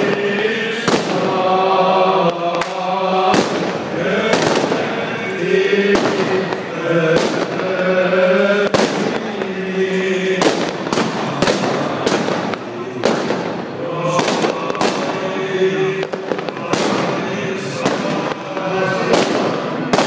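Firecrackers and fireworks going off in irregular sharp bangs, about one or two a second, over Orthodox Byzantine chanting by male voices.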